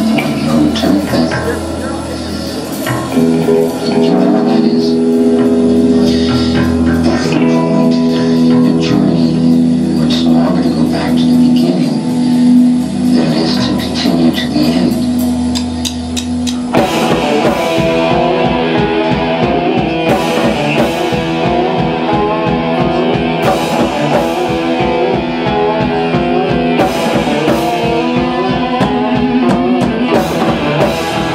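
Live instrumental surf punk from a rock band on electric guitars, bass and drums. For the first half the guitars and bass hold long ringing notes. About halfway through, the full band drops into a fast, driving beat.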